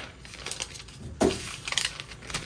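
Rustling and light handling of plastic grocery packaging: a few short crinkles and knocks, the loudest about a second in.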